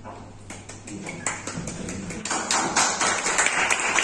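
A small group of people applauding: a few scattered claps at first, building to fuller, denser clapping about two seconds in.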